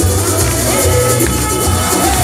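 Loud music with a heavy bass beat.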